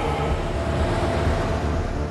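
A stretch Hummer limousine driving past on a wet road, its engine and tyre noise heard as a steady rush, over background music with a steady pulsing bass beat.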